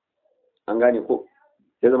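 Only speech: a man's voice saying one short phrase of about half a second between pauses, then talking again near the end.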